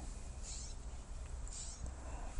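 Faint, high-pitched animal chirps, about one a second, over a low steady hum.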